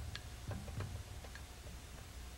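Faint, irregular wooden ticks from the documentary's percussive background music, thinning out and fading.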